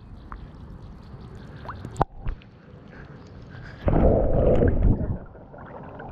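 Pond water sloshing and gurgling close to the microphone as a wading angler fights a hooked bass, with a sharp knock about two seconds in and a loud splashing burst lasting about a second past the middle.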